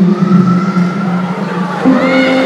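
Live band playing a slow song between sung lines: sustained instrumental notes hold and slowly fade, a lower held note dropping away about half a second in.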